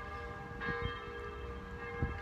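Bell-like ringing tones, several pitches sounding together and held steady, swelling again about half a second in.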